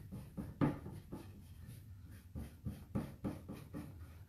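A light abrasive pad scrubbing over silver leaf on a painted wood surface in short, uneven strokes. The loudest stroke comes about half a second in.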